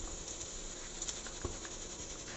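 Faint steady background noise with a few soft clicks about a second in and again shortly after.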